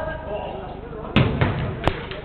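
Football being kicked and knocking against the court's boards: a sharp loud thud about a second in, a smaller one just after, and another sharp knock near the end, with players' shouts around them.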